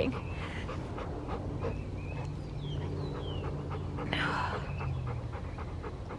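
Golden retriever panting close to the microphone.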